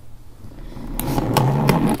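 A toy monster truck figure being played with: an engine-like vroom that builds up over the second second, with a few sharp clicks.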